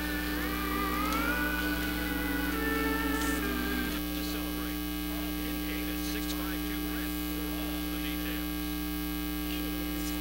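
Steady electrical mains hum and buzz on an old recording's audio line. For the first few seconds, faint wavering tones ride over it.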